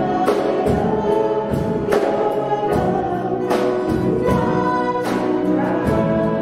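Live worship band playing a slow song: singers over grand piano, with a steady beat of drums and cymbals.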